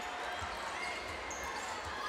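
A basketball being dribbled on a hardwood court, its bounces low and soft under the steady murmur of an arena crowd.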